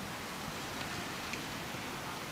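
Steady city street ambience: an even background hum of traffic and surroundings, with a few faint scattered ticks.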